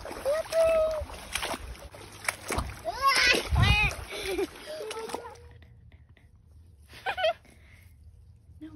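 Water splashing and running in a shallow, rocky creek as a child reaches into it. The water sound cuts off suddenly about five seconds in.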